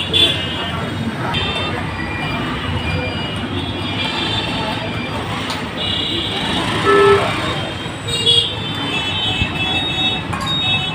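Busy street traffic noise with vehicle horns tooting now and then, including a short horn note about seven seconds in.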